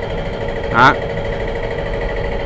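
A steady motor hum with fixed, unchanging tones, over which a man says one short word.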